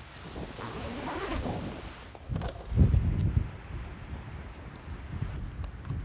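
Wind buffeting an outdoor microphone, an uneven rushing with a strong low gust about three seconds in.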